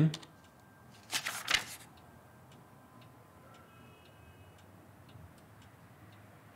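Faint laptop keyboard taps, a few a second, with a short breathy voice sound about a second in.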